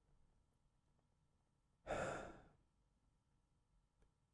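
A man's single audible breath, a short sigh about two seconds in.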